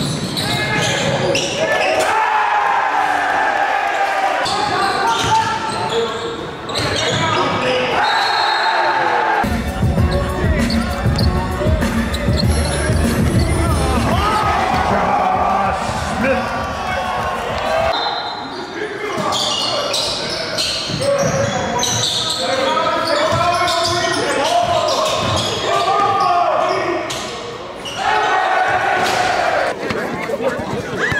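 Live basketball game sound: balls bouncing on the court and people shouting, with a deep steady rumble for several seconds in the middle.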